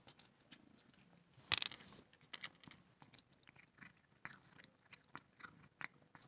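A cat chewing a treat it has just been given: a run of small, irregular clicks, with one brief louder noise about one and a half seconds in.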